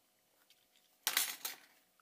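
A utility knife's metal blade scraping briefly across hard glass: one sharp half-second scrape about a second in, after a near-quiet start.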